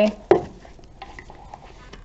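A spiral-bound paper planner knocks once against a wooden tabletop as it is turned round, followed by faint paper rustling and small taps as it is set down and straightened.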